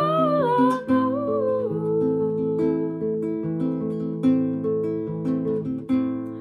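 A woman singing a held, wavering note over acoustic guitar. Her voice drops away after about a second and a half while the guitar plays on alone.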